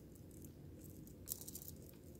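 Quiet room tone with a few faint clicks of metal charms knocking together on a charm bracelet as it is handled, about two-thirds of the way through.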